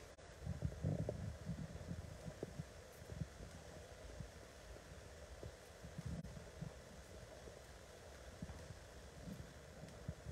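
Faint, irregular low thuds and rumble of a handheld phone being carried at walking pace: footsteps and handling noise on the microphone.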